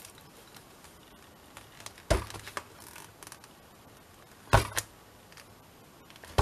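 Hands handling paper and a hardback book on a craft mat while a folded signature is set level in the cover: two short knocks, about two seconds in and, louder, about four and a half seconds in.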